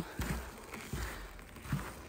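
Soft footsteps on frosty ground, a few faint low thuds with light crunching.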